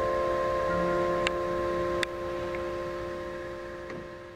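Mallet-percussion keyboards holding a sustained chord of several ringing notes that slowly fade, with a new low note entering about a second in and a couple of light taps.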